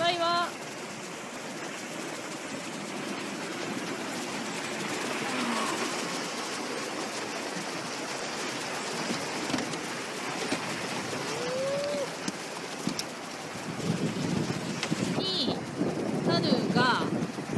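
Rushing whitewater of river rapids heard from a boat running through them: a steady, even rush of water.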